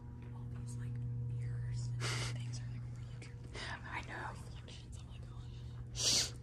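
Whispered speech in two short bursts, about two seconds in and again near the four-second mark, over a steady low hum.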